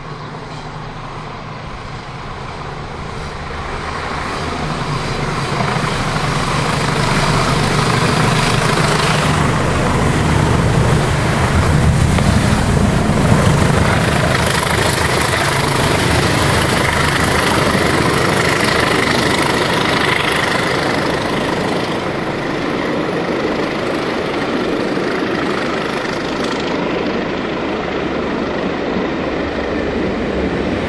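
Diesel locomotive engine working hard as a train climbs a gradient. The engine's drone builds over the first several seconds, is loudest as the locomotive passes beneath, and stays loud as the train runs on away up the bank.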